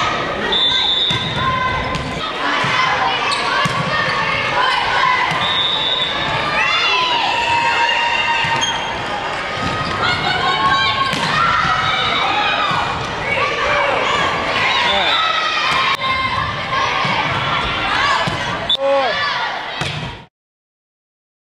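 Volleyball players and spectators shouting and cheering in a gymnasium hall, many voices overlapping, with sharp thuds of the ball being hit through the rally. The sound cuts off suddenly at the end.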